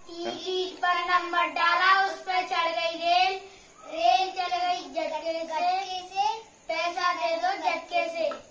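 Young boys singing a traditional Tesu–Jhanji folk song in Hindi in three sung lines, with short breaths between them about three and a half and six and a half seconds in.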